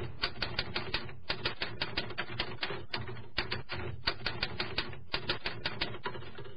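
Typewriter keys clacking in quick runs of strokes, about five a second, with short pauses between runs: a typing sound effect laid under on-screen text being typed out.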